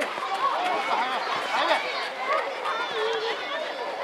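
Several high voices shouting and calling out over one another, the overlapping calls of young players and spectators at a youth football match.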